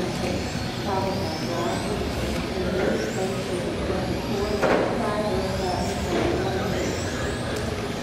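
Electric 1/10-scale RC touring cars racing, their motors and drivetrains whining and rising and falling in pitch as they accelerate and brake through the corners.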